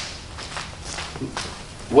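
A few soft footsteps or shuffles, three faint taps spread over two seconds, over a quiet low room hum.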